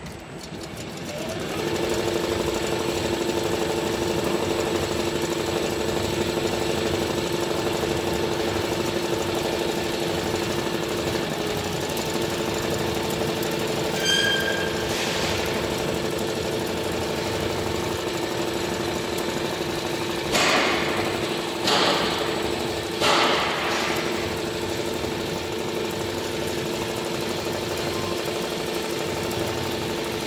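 Richpeace multi-needle cap embroidery machine starting up and then stitching steadily, its needle drive running with a fast, even mechanical rattle and hum. A short beep-like tone sounds about halfway through, and three brief louder hissing bursts come a little after two-thirds of the way.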